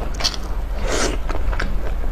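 Close-up biting and chewing of braised pork knuckle, with wet mouth clicks and a louder burst about a second in.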